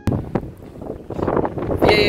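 Wind buffeting the camera's built-in microphone: a rough, gusting rumble that starts abruptly and swells louder in the second half.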